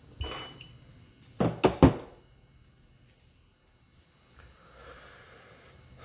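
Small objects handled on a hard tabletop: two or three sharp clicks about one and a half seconds in, then faint soft rustling. A faint steady high tone runs underneath.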